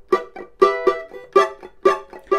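Cavaquinho strummed in a rhythmic pattern, sharp chord strokes about every quarter to half second with the chords ringing between them.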